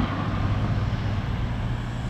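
A parked car's engine idling: a steady low hum under outdoor road noise.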